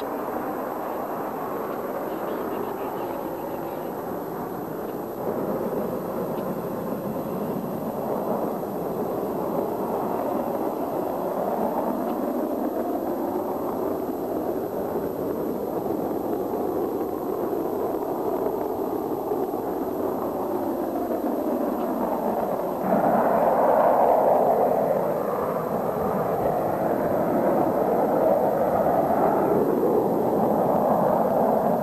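Steady rushing noise of aircraft in flight, getting louder about three-quarters of the way through.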